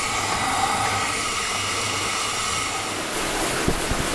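Pork and vegetable stew simmering and sizzling in a thin wok over a gas burner, a steady rushing noise.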